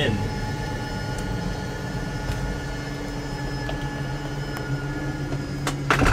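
Electric slide-out motor of a travel trailer running steadily as it draws the slide room in. Near the end the first clicks of the motor's clutch come in, the sign that the room has reached all the way in.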